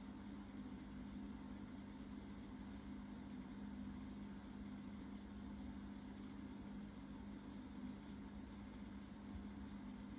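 Quiet room tone: a steady low hum with a faint even hiss.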